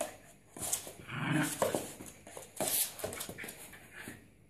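A dog vocalizing in a small room, with several sharp knocks and scuffles in between.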